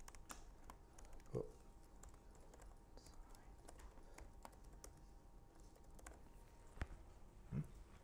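Faint computer keyboard typing: quick scattered keystrokes as a line of code is typed out, with two brief low thumps, one about a second and a half in and one near the end.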